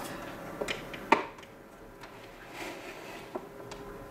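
A few light plastic clicks and one sharper knock about a second in, as the clear plastic lid of a small egg incubator is handled and lifted off its base, over a faint steady hum.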